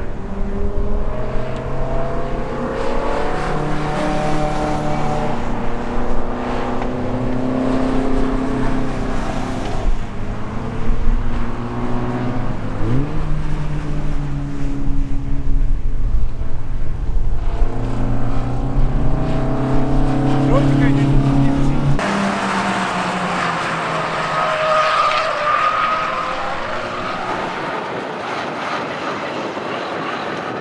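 Racing car engines running hard on a circuit, several cars passing one after another, the pitch rising and stepping down as they accelerate and change gear. Partway through, the sound changes abruptly to a more distant engine noise with more hiss.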